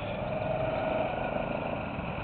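Go-kart engines running steadily on the track, with a faint droning engine tone that comes in shortly after the start and fades past the middle.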